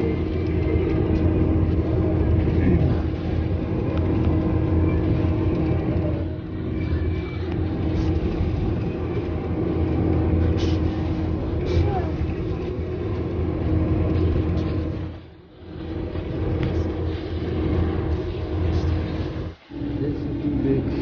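Steady road and engine noise heard from inside a vehicle moving at highway speed, a continuous low rumble with a faint steady hum. Twice near the end the sound drops away briefly and comes back.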